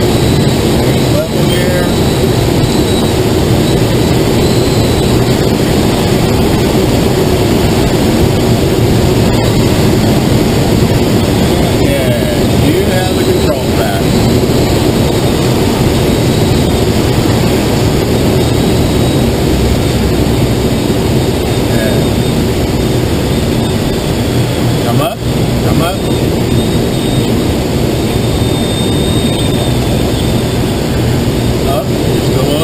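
Loud, steady rush of airflow around a glider's canopy in flight, with a low steady drone underneath.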